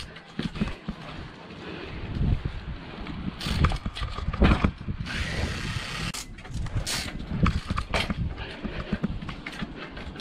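Mountain bike rolling over rough concrete, with repeated knocks and rattles from the bike and a low rumble of wind on the microphone; a hissy stretch of tyre or wind noise comes about five seconds in.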